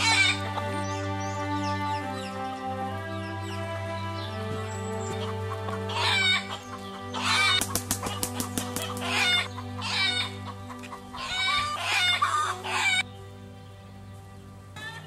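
Chickens clucking in several short bursts, most of them in the second half, over background music of long held notes.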